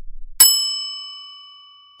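A single bright bell-like ding, a quiz timer's time-up chime, struck about half a second in and ringing out in a slow fade.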